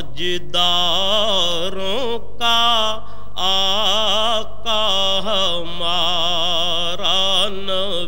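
A solo voice singing a naat, an Urdu devotional poem in praise of the Prophet Muhammad, in long wavering, drawn-out phrases with short breaks between them.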